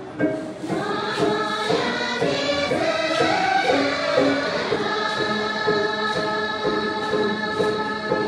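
A group of women singing a Dolpo gorshey circle-dance song together, with long held notes in the second half.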